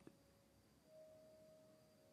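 Near silence: faint room tone with a thin, steady hum and a tiny click near the start.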